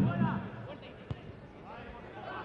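A football kicked once, a single sharp thud about a second in, with voices calling on the pitch around it.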